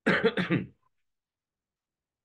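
A man clearing his throat, a short rasp of under a second with a few quick pulses.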